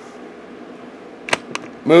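Two sharp taps on the open Amiga 3000's metal chassis, about a quarter second apart, the first the louder, over a faint steady background hiss.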